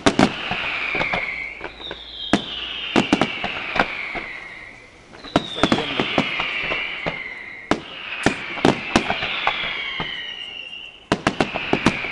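Aerial firework shells bursting in quick clusters of sharp bangs, again and again, with a high whistle that falls in pitch about five times.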